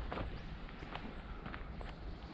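Footsteps of a person walking, four separate steps over a steady low rumble.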